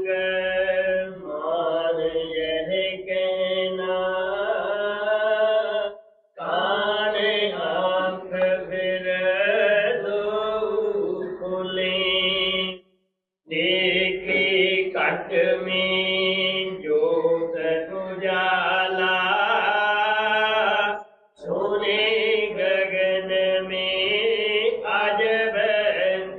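A voice chanting a devotional hymn in long melodic phrases, breaking off briefly three times.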